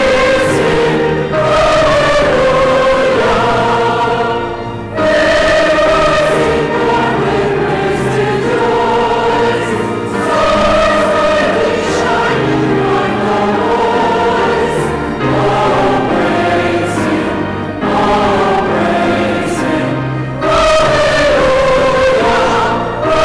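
A choir singing a sung part of the Vespers service in a large church, in phrases of about five seconds with brief breaks between them.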